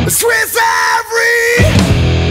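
Heavy stoner rock music with a yelled vocal phrase. The bass and drums thin out beneath the voice, then the full band comes back in near the end.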